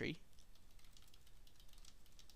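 Faint typing on a computer keyboard: a quick run of light key clicks.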